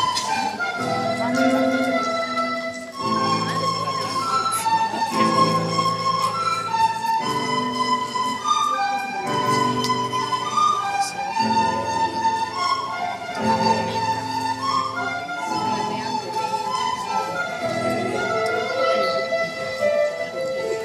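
School recorder ensemble playing a melody together, accompanied by piano chords struck about every two seconds.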